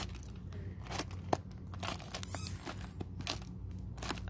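Cellophane-wrapped journals being flipped through by hand on a wire shelf rack: irregular faint crinkles and clicks over a steady low hum.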